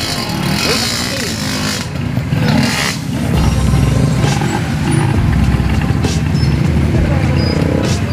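Several small motorcycles running and pulling away one after another, their engines blending into a steady rumble that grows fuller a few seconds in, with people talking over them.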